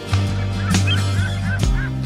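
Gulls calling: a quick run of short cries over background music.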